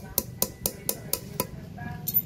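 Back of a hatchet head tapping a small nail through a flattened metal bottle cap laid on a wooden stump: about seven light metal strikes at roughly four a second, which stop about a second and a half in.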